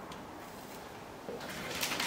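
Quiet kitchen room tone with a faint low hum briefly about a second in, and soft handling rustles near the end as food is picked up from the tray.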